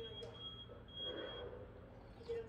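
A man sipping and slurping broth straight from a paper instant-noodle bowl, with a louder slurp about a second in. A thin high tone sounds in three short stretches during the first second and a half.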